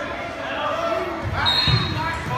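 People talking in a school gymnasium, with a couple of dull thumps about a second and a half in and a brief high squeak near the end.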